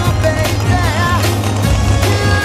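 Music: a song with a steady beat, a heavy constant bass and a wavering melody line.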